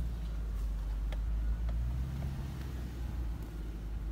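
A truck driving slowly on a dirt forest trail, heard from inside the cab: a steady low rumble of engine and tyres, with a few faint clicks.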